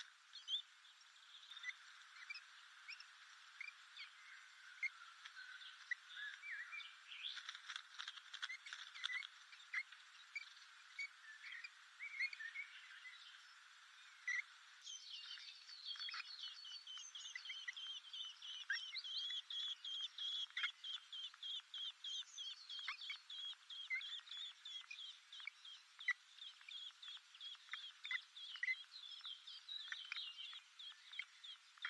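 Common blackbird nestlings begging at the nest: a run of short, high cheeps that becomes denser and more continuous from about halfway.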